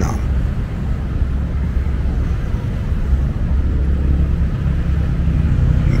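Steady low rumble of road traffic running across the bridge.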